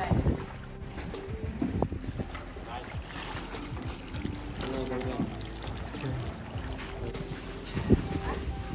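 Water splashing and sloshing as a long-handled hand net scoops a live fish out of a netted sea pen, with a sharp knock near the end.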